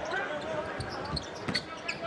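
A basketball being dribbled on a hardwood court over steady arena crowd noise, with a few sharp bounces about a second and a half in.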